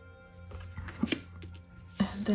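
Background music with held tones, with a few light taps and rustles of a paper postcard being handled and laid down on a table about a second in.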